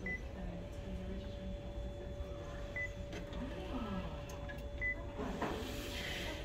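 Short high beeps from a multifunction copier's touchscreen as its keys are pressed, three times a couple of seconds apart, over a steady hum.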